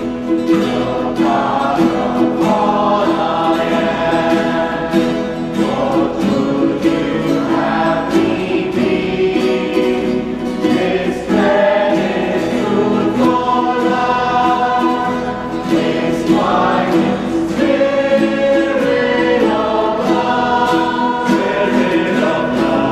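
Mixed choir of men and women singing a Christian hymn in harmony, accompanied by strummed acoustic guitars.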